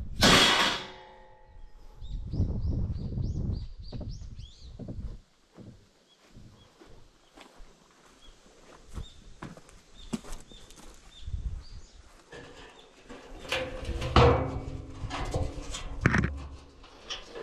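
Steel scaffolding pipes and frames clanking as they are handled, with a loud ringing clang just after the start and another ringing metallic rattle near the end. A small bird chirps in quick repeated notes in between.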